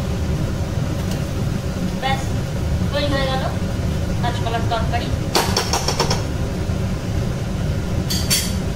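A steady low machine hum, with a steel spatula scraping and clicking against an iron wok as potato curry is stirred; a quick run of clicks comes about five and a half seconds in.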